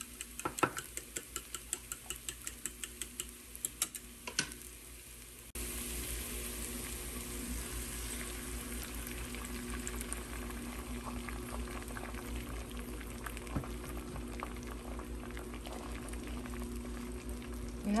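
Eggs being beaten in a small metal bowl, about four quick clicks a second, for the first five seconds or so. Then, after an abrupt jump in level, a steady sizzle of beaten egg frying over chopped broccoli in a nonstick pan, with a faint low hum underneath.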